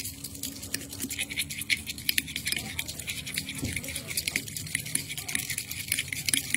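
Metal spoon stirring and scraping a paste mixture against a glass bowl, a dense run of rapid small clicks and scrapes over a low steady hum.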